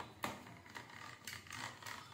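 Metal mathni (hand churner) spun back and forth between the palms in a plastic bowl of liquid, giving faint, irregular clicks and scrapes about three or four times a second as it churns the mixture.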